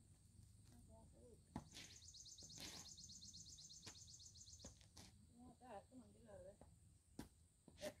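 Quiet outdoor ambience with a few short sharp knocks; the last, near the end, is a boot stamping on a wasp on the concrete. A high, rapid pulsing sound runs for about three seconds in the middle.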